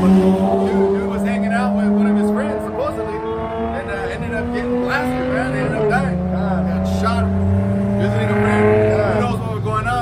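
A motor vehicle's engine running in street traffic, a steady drone that steps to a new pitch about three seconds in and again about six seconds in. Scraps of voices sit underneath it.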